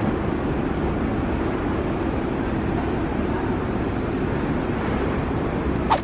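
Steady rushing city street ambience, a dull even noise like distant traffic with wind on the microphone. A single sharp click comes just before the end.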